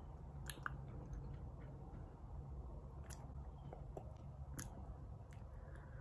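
A person biting into a crispy chicken sandwich and chewing, with a few faint, sharp crunches and mouth clicks scattered through the chewing.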